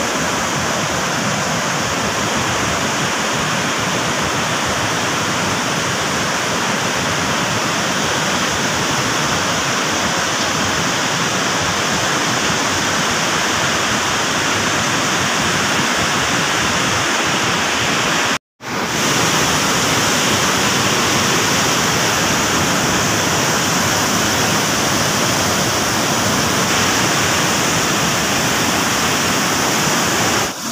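Floodwater rushing through the open gates of a dam spillway and churning in the river below: a loud, steady roar of water, cutting out for an instant about two-thirds of the way through.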